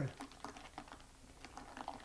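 Faint, irregular clicks and taps of a stirrer knocking against ice cubes and the glass as powdered alcohol is stirred into a cold drink.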